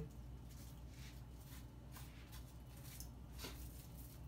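Faint rustling and light clicks of small pieces of T-shirt fabric being handled and folded by hand, over a low steady hum.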